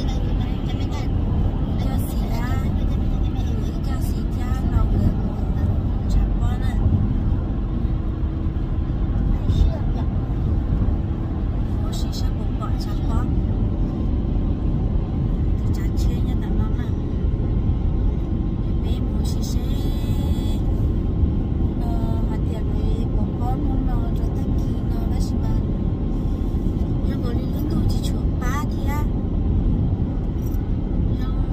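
Steady road and engine noise inside a moving car's cabin, with voices talking over it at times.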